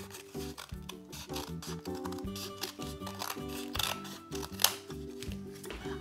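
Scissors snipping through thin cardboard from a toilet paper tube, a series of short sharp cuts with the crispest near the end, over light background music.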